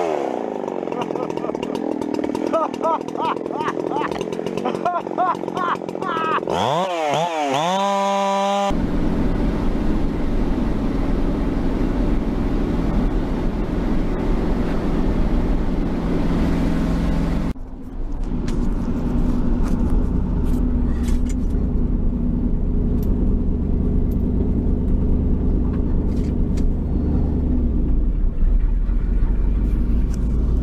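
A chainsaw revving up and down, then held steady at high revs. About nine seconds in it cuts to an old pickup truck's engine and road rumble heard from inside the cab, with light clicks and rattles.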